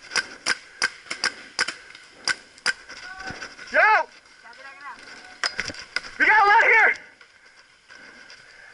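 Paintball markers firing a rapid string of sharp pops, about three a second for the first three seconds and a few more around five and a half seconds in. Two loud shouts from players break in, the louder one about six seconds in.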